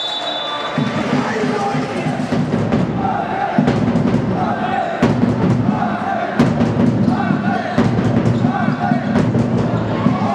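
Spectators chanting in a repeating rhythm with a beat about once a second, over a basketball bouncing on the hall floor.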